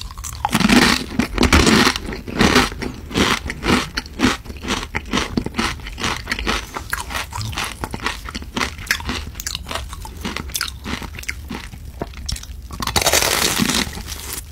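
Close-miked chewing of crispy fried food, with a steady run of irregular crunches. The loudest crunchy bites come about a second in and again near the end.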